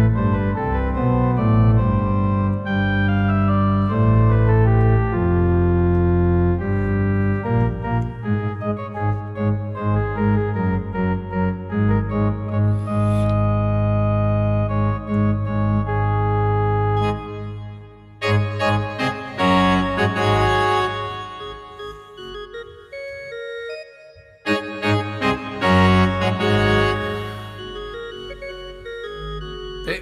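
Omenie Pipe Organ iPad app playing back a recorded organ performance: sustained chords over a deep bass line, changing every second or so. The playing thins out past the middle and drops away briefly about three quarters of the way through before resuming.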